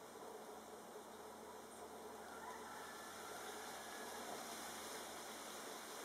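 Faint steady outdoor ambience: a low hiss with a faint insect buzz.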